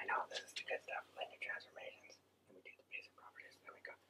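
Faint whispered speech in short broken phrases, thinning out around the middle and returning briefly later on.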